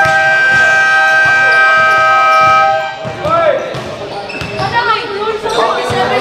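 Basketball court buzzer sounding one steady, loud tone for nearly three seconds, then cutting off. Basketballs bounce on the court throughout, and voices follow once the buzzer stops.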